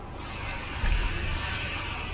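A car's rear door being pulled open, with rustling and a few low thumps about a second in, over a steady hiss of street noise.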